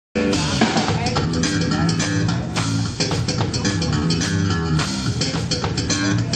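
Live jazz-funk band playing electric bass, electric guitar and drum kit, with the music cutting in abruptly mid-song at the very start.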